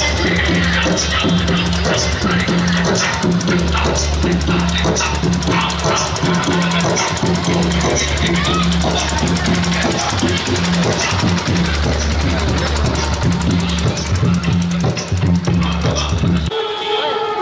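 Loud music from a truck-mounted DJ sound system: a singing voice over a heavy, repeating bass line.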